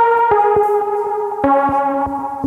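A synthesizer melody plays back from the Akai MPC X's TubeSynth plugin on its Zinger preset. It holds notes with a bright, buzzy edge, steps to a new pitch about a third of a second in and again about a second and a half in, and carries a quick ticking pulse of roughly four or five a second.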